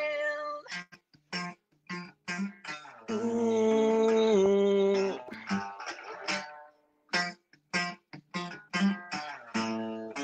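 Acoustic guitar played in an instrumental passage of a song: short separate plucked chords, with one longer held chord from about three to five seconds in. The sound drops out to silence in the gaps between notes.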